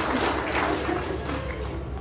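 Audience applauding, dying away toward the end.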